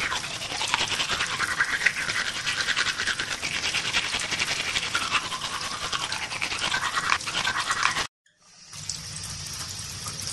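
Toothbrush scrubbing teeth in fast, rapid strokes for about eight seconds, cutting off suddenly. After a brief silence a quieter, steady hiss follows near the end.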